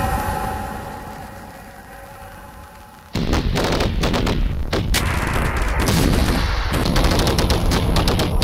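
Industrial electronic music: a droning, tonal sound fades over the first three seconds. Then, about three seconds in, a sudden loud wall of noise made of rapid, sharp cracks starts and keeps going, in the manner of a sampled burst of machine-gun fire.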